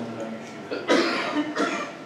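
A person coughing twice, about a second in and again just over half a second later, amid low talk.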